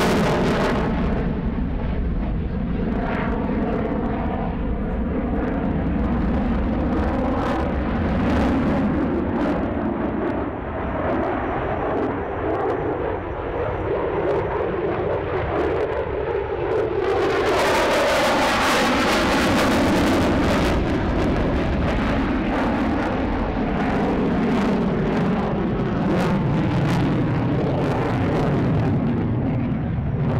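Single-engine F-16 fighter jet running with its afterburner lit through a tight, high-g turn: a loud, continuous jet roar with a sweeping, phasing tone. It grows harsher and brighter about 17 seconds in as the jet comes closest.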